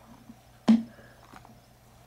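Handling noise as a tablet is pulled out of the snap-in corners of its padded case: one sharp click or knock about two-thirds of a second in, then a few faint taps.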